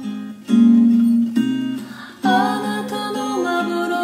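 Strummed acoustic guitar under layered female voices singing a wordless harmony, the voices sliding between some notes. A new chord comes in loudly about half a second in and again just after two seconds.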